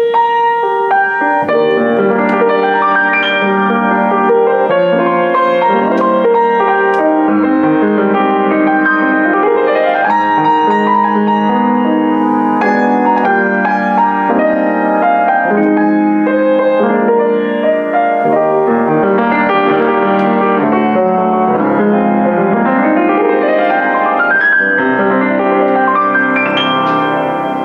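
Boston GP-156 acoustic baby grand piano played in a standards style: full chords and melody, with two quick rising runs up the keyboard, about eight seconds in and again near the end.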